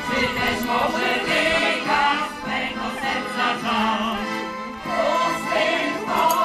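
Large folk choir singing together.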